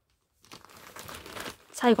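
Faint rustling and crinkling of dry hay as a pet rabbit pulls at and chews hay from its hay rack, starting about half a second in.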